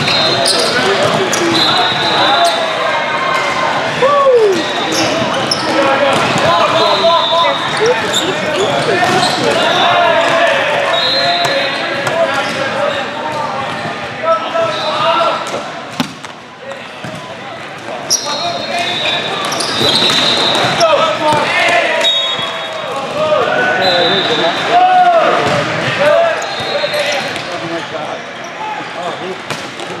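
Echoing din of a large hall during indoor volleyball: many voices calling and shouting, mixed with sharp slaps of volleyballs being hit and bouncing. The noise eases briefly a little past halfway, then picks up again.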